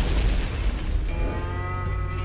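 An explosion with a deep rumbling boom. About a second in, a sustained low, brass-like chord of dramatic trailer music takes over.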